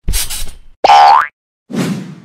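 Cartoon sound effects for an animated logo: a short rushing noise, then a loud rising boing about a second in, and a dull thud that rings on briefly near the end.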